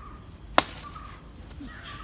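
A single sharp snap about half a second in: a hollow papaya leaf stalk being broken off the tree by hand.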